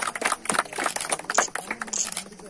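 A small group of people clapping by hand, a quick irregular patter of claps.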